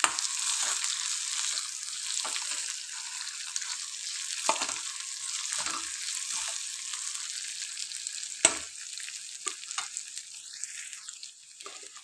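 Chicken pieces and sliced vegetables sizzling in hot oil in a pan while a metal spatula stirs them, with scrapes and knocks of the spatula against the pan. The loudest knock comes about eight seconds in. The sizzle dies down near the end.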